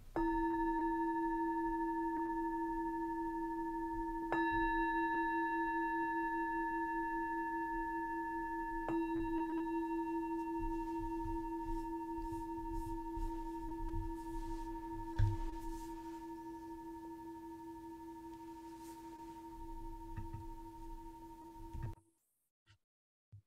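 A meditation bowl-bell struck three times, about four seconds apart, its steady ringing tone building with each strike and then slowly fading away; the rings close a period of silent sitting meditation. A brief soft knock comes about fifteen seconds in.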